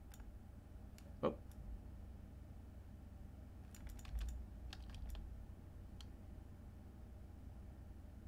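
Scattered computer keyboard and mouse clicks as values are entered, with a quick run of keystrokes around four seconds in and a few more just after five seconds. A brief, slightly louder sound stands out about a second in, over a faint steady low hum.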